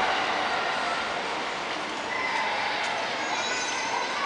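Steady hubbub of an indoor shopping-mall concourse, with faint distant voices.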